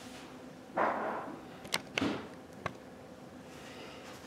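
Hard plastic sewing machine carrying case being set down on a cloth-covered table: a short rustling whoosh about a second in, then three sharp clicks, one with a low knock, over the next second or so.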